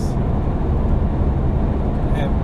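Steady road and engine rumble heard inside the cabin of a vehicle driving along a highway.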